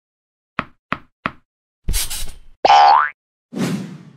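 Cartoon sound effects: three quick light pops, then a short noisy burst, a short rising boing, and another noisy burst near the end.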